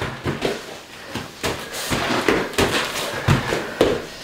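Hands and feet of two people doing burpees, thudding and slapping on rubber floor tiles: a run of irregular thumps as they drop chest to the floor and jump back up.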